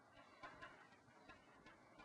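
Near silence: quiet room tone with a few faint, irregular ticks.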